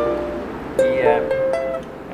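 Ukulele chords: a held F chord rings and fades, then an E minor chord is strummed once about a second in and rings out.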